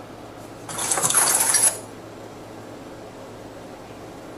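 A sudden burst of clattering and rustling, about one second long and starting under a second in, heard through the audio of a police body-worn camera during a foot pursuit, over a steady low room hum.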